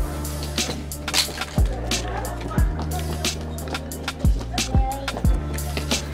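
Background hip-hop-style beat: deep kick drums at an uneven rhythm over a sustained bass line, with crisp hi-hats ticking throughout.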